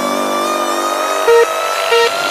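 Electronic trap music in a drumless break: a held synth chord whose top note slowly rises, with no bass, and two short synth stabs in the second half.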